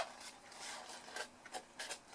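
Scissors snipping a small wedge into card stock with one sharp snip, followed by card rubbing and rustling as it is handled and a few small clicks.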